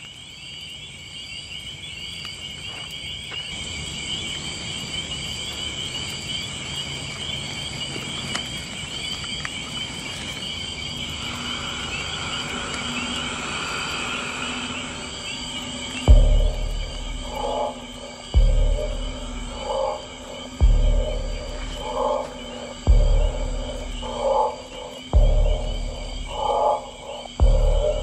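Night ambience of insects chirring steadily. About halfway through, a dark music score comes in under it with a deep, heavy pulse about every two seconds.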